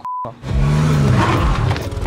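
A brief censor bleep, then from about half a second in a small car's engine revving hard at full throttle, loud and rough, as the car struggles to pull away up a steep hill.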